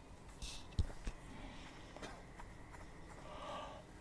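Quiet arena room sound between shots: a soft low thump about a second in, with a few faint rustles, clicks and a brief hiss around it.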